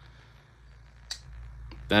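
A titanium-handled folding knife's blade action clicking: one sharp click about a second in and a fainter one shortly after, as the blade is flicked and locks or snaps shut on its detent.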